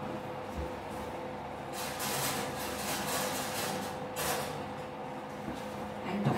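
Metal muffin trays slid onto the racks of an open oven: two scraping sounds, a longer one about two seconds in and a short one about four seconds in, over a steady low hum.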